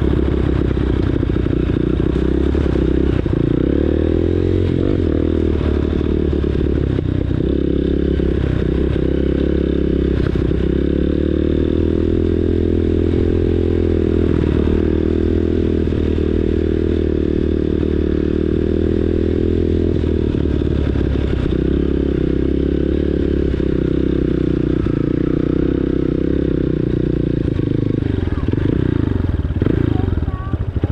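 Dirt bike engine running steadily at trail-riding speed, its note rising and falling a little with the throttle. Near the end the engine note drops as the bike slows to a stop.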